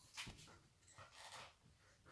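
Near silence with two faint, short breaths, one just after the start and one in the second half.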